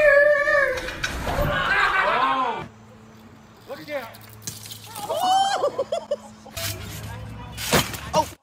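People yelling and exclaiming in high, excited voices, then quieter voices over a steady low hum. The sound changes abruptly several times, with a couple of sharp bursts near the end.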